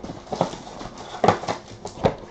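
Cardboard trading-card box being opened and its foil-wrapped packs handled: a few hollow clacks, with rustling in between.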